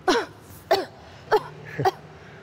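A young woman coughing and clearing her throat in four short, hoarse, voiced bursts about half a second apart, each falling in pitch, as she complains of a sore throat.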